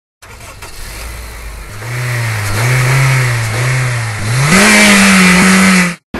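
An engine revving: the revs rise and fall a few times, then climb sharply a little past four seconds in and hold high until the sound cuts off suddenly.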